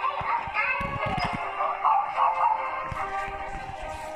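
A young child's voice, vocalising without clear words, over music and voices from a screen playing in the room, with a few soft knocks.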